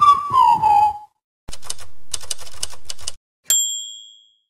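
Title-sequence sound effects: a falling whistle glide ends about a second in. After a short gap comes a rapid run of typewriter key clicks lasting under two seconds, then a single typewriter bell ding that rings and fades.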